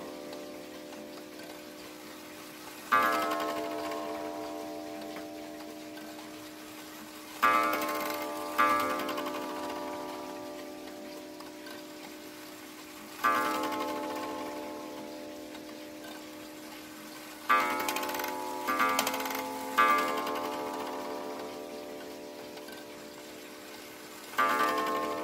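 A Junghans regulator clock's hammer strikes its coiled gong as the hands are turned forward. It strikes once for the half hour, twice for two o'clock, once for half past two, then three times for three o'clock, and each strike rings out and fades slowly.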